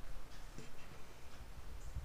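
Faint light ticks and rustles of a hand and ballpoint pen moving against a sheet of paper, over a low steady room hum.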